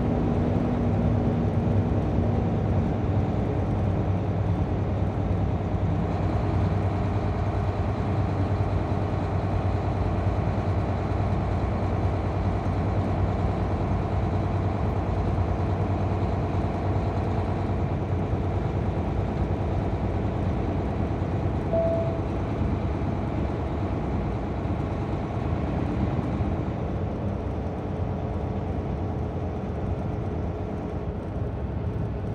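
Steady drone of a vehicle driving along a highway, heard from inside: a continuous low engine hum with tyre and road noise, easing slightly near the end.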